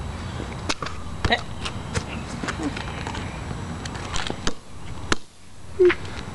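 A rubber basketball kicked and bouncing on a concrete sidewalk: a handful of sharp knocks at irregular intervals over a low steady rumble.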